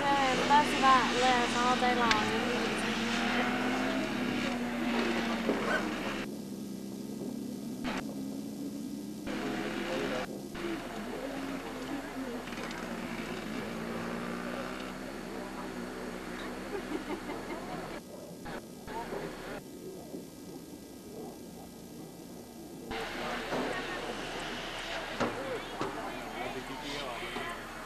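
Sportbike engines on a race circuit, heard from trackside: a passing bike's engine note falls over the first few seconds, and later another's note climbs as it accelerates.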